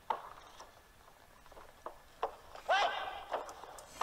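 Faint, mostly quiet hall ambience, with a few soft knocks about two seconds in and a short burst of voice about three seconds in.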